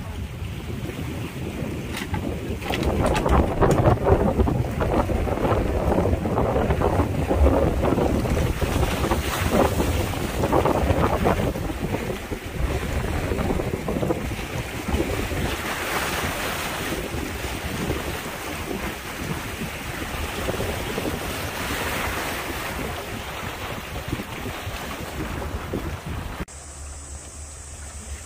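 Wind buffeting the microphone, heaviest in the first half, over sea waves washing against shoreline rocks, the hiss of surf swelling a couple of times later on.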